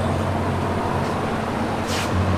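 A steady low machine hum, with a short sharp click near the end.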